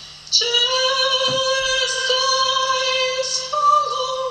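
A woman singing live, holding one long steady note that starts about a third of a second in, then shifting to a new pitch near the end.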